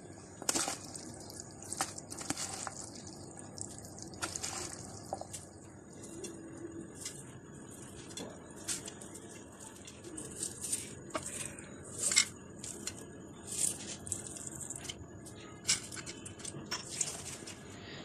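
Faint, irregular clicks and soft wet stirring sounds of a spoon mixing a chopped-vegetable, chickpea and macaroni chaat in a plastic container.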